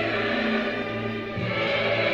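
Choir singing a sacred Kyrie in sustained chords, classical choral music for solo vocal quartet and choir. The voices soften briefly a little past a second in.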